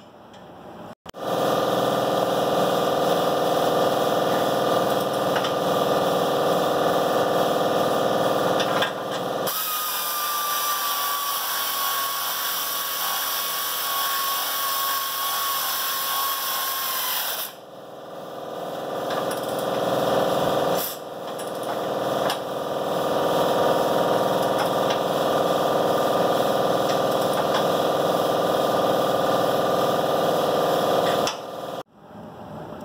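Pneumatic tool on an air hose running at the Jeep's front bumper, a loud steady whirring that goes on in long stretches with a short dip about two-thirds of the way through.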